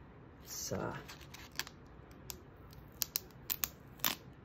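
Black duct tape being worked against masking film on a painted plywood board: a handful of sharp, crackling clicks in the second half.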